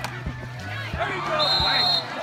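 Background music with a steady thumping beat and held bass notes. A high, steady tone sounds in about the last half second.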